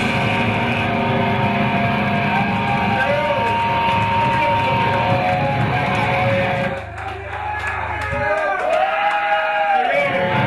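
Heavy metal band playing live, with distorted guitar and drums. About seven seconds in the drums and bass drop away, leaving a thinner passage of long notes that bend up and down in pitch, before the full band comes back in.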